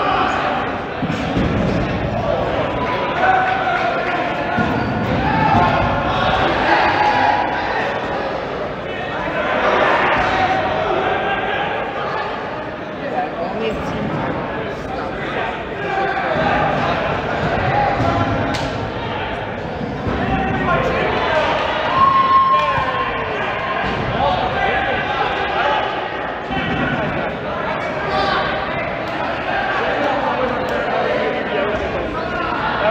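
Untranscribed voices talking in a large, echoing gym, with dodgeballs bouncing on the hard court floor now and then.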